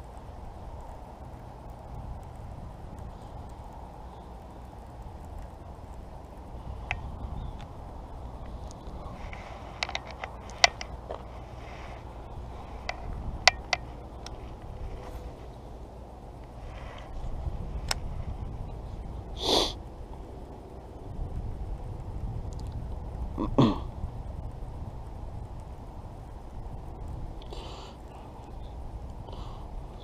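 Low steady rumble of wind on the microphone, with a few light clicks from handling a baitcasting rod and reel between about seven and fourteen seconds in. A short, sharp noise about twenty seconds in is the loudest event, and a second brief one with a falling pitch comes about four seconds later.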